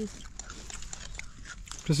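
Quiet eating sounds: soft scattered clicks and rustles as fingers work rice on a foil plate, with chewing.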